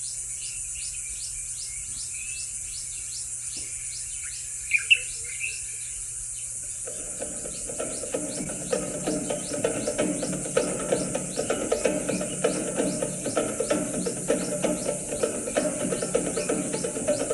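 Steady high buzzing of insects, with a few bird chirps, the loudest about five seconds in. From about seven seconds, background music with a steady beat comes in over the insects.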